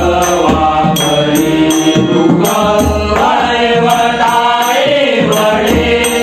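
Marathi devotional bhajan: men singing together over a harmonium, a pakhawaj drum and small hand cymbals. The cymbals are struck about twice a second to keep the beat.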